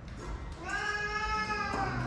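A cat gives one long meow lasting over a second, rising in pitch at the start and dropping away at the end.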